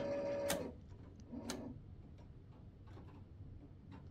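Electric actuator driving its rod with a steady whine that stops with a click about half a second in. A few faint clicks follow, with a brief low hum around a second and a half.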